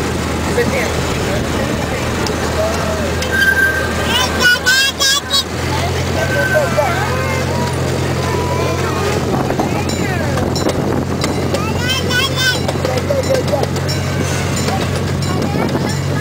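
Miniature park train's locomotive engine running with a steady low hum as the train rolls along. Its note steps up slightly and grows stronger about five and a half seconds in.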